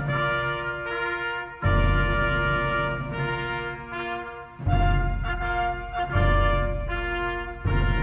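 Brass music: trumpets and trombones holding slow chords, with a deep drum stroke opening each new chord, four times.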